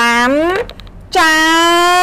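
A high voice chanting two long, drawn-out syllables in a sing-song. The first rises in pitch at its end; the second is held level about a second in before lifting slightly.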